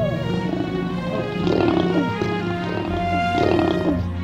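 Lions growling during mating, a series of rough growls with two louder ones about one and a half seconds in and near the end, over background music with held notes.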